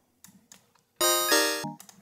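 Serum software synthesizer's home-made kalimba patch sounding a few short, very bright, buzzy notes rich in high overtones, starting about a second in and changing twice before cutting off just before the end; the tone is heavy in upper harmonics because high harmonics have just been added to the noisy attack wavetable. Faint clicks come before it.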